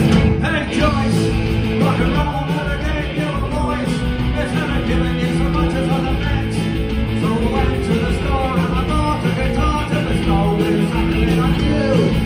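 Live rock band playing loudly, with electric guitars, bass guitar and drums, and a man singing lead.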